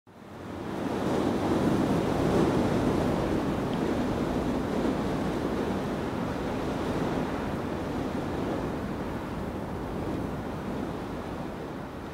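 Wind blowing, a steady rushing noise with no tone or rhythm that fades in over the first second and eases slightly toward the end.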